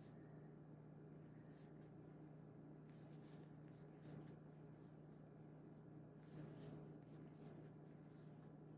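Near silence: faint, intermittent scratchy rustling of cotton yarn drawn through stitches by a metal crochet hook as double crochets are worked, over a faint steady low hum.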